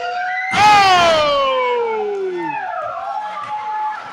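A spectator's loud, long shout, starting about half a second in and falling steadily in pitch over about two seconds, in reaction to a kick in the ring; a shorter, steadier call follows near the end.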